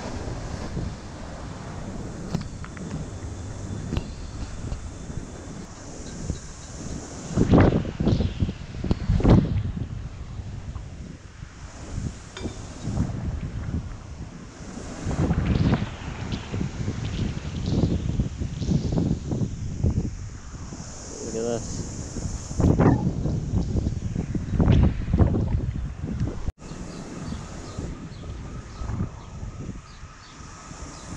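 Strong storm wind buffeting the microphone in repeated heavy gusts, over the wash of rough surf.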